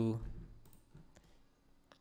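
A few faint, separate clicks from a computer's keys or mouse buttons, following a spoken word that trails off at the start.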